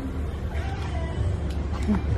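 Retail store ambience: a steady low hum with faint voices in the background.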